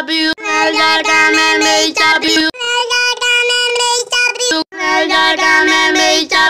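A single voice singing a short repeated phrase in held, steady notes. The sections are cut off abruptly and the pitch jumps to a new register at each cut, about two and a half and four and a half seconds in, as from pitch-shifting edit effects.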